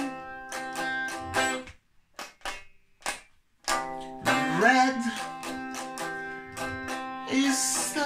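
Small-bodied acoustic travel guitar played with the fingers, ringing chords. It drops to a few single plucked notes about two seconds in, then comes back in full about a second and a half later.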